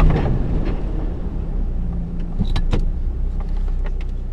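A 4x4's engine running steadily as the vehicle drives through shallow river water, with a few brief clicks and knocks a little past halfway.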